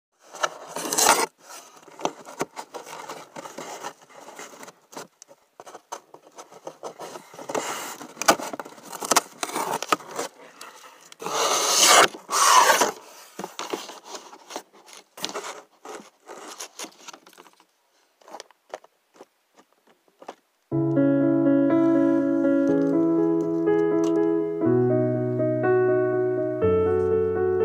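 Irregular rustling and scraping noises with scattered clicks and a few louder swells, then a brief lull. About three-quarters of the way through, background piano music begins: sustained chords changing every couple of seconds.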